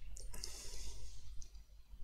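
A man's quiet breath through nose or mouth with a few faint mouth or lip clicks during a pause in his speech.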